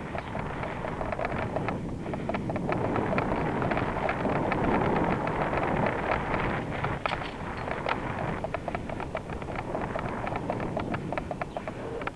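Wind and road noise rushing over the microphone of a camera on a moving bicycle, with a steady scatter of small clicks and rattles from the bike on the pavement. The rush swells in the middle, then eases.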